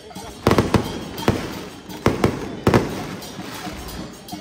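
Firecrackers going off in sharp, irregular bangs, about seven in the space of a few seconds, each with a brief ringing tail, over background crowd noise.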